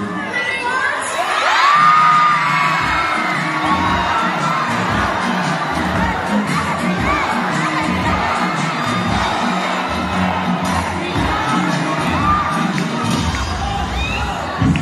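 A crowd of young spectators cheering and screaming, loudest about two seconds in, over dance music with a low, steady beat.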